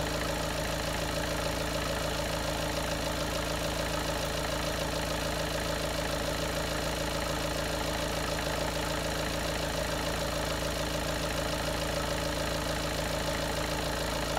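Volkswagen TDI diesel engine idling steadily with the bonnet open, while the alternator charges the battery under the load of the headlights and blower fan.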